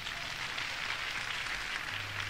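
Concert audience applauding, quiet and steady.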